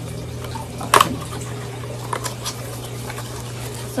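Packaging being handled and pulled at while opening a parcel: scattered small crinkles and clicks, with one sharp snap about a second in, over a steady low hum.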